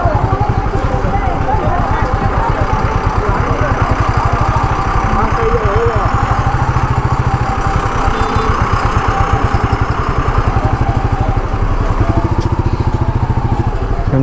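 Royal Enfield Meteor 350's single-cylinder engine ticking over at walking pace with a steady, even thump. Crowd voices chatter around it.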